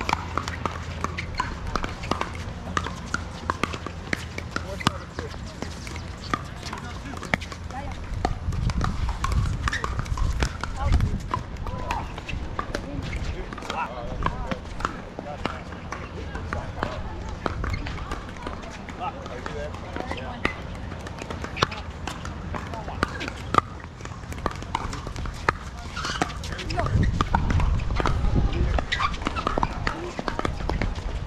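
Pickleball paddles hitting the plastic ball: sharp pops at irregular intervals, from the rally on this court and from neighbouring courts, over players' voices in the background. A low rumble swells up twice, about a third of the way in and near the end.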